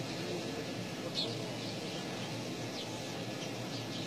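Outdoor background ambience: a steady low hiss with faint distant voices and a few short, high chirps of small birds.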